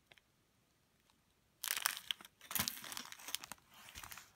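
Near silence, then from about a second and a half in, a thin plastic zip-lock bag crinkling in irregular bursts as it is handled and put down.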